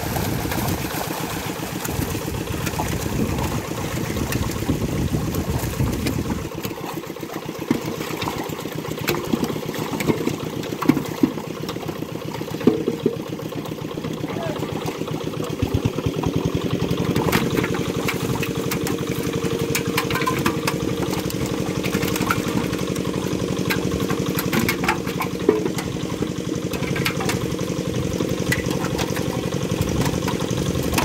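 Fish thrashing and splashing in a tightly drawn seine net, heaviest for about the first six seconds, then scattered splashes and slaps as fish are handled. Under it runs a steady engine hum.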